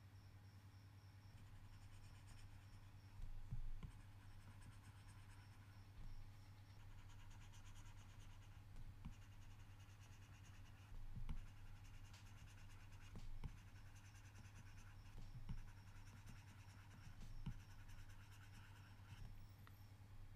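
Faint scratching of a stylus scribbling across a tablet screen as circles are coloured in, with a light tap every couple of seconds, over a steady low hum.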